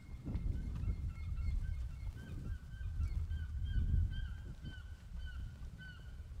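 Birds calling outdoors: many short, high chirps repeating throughout, over a steady low rumble.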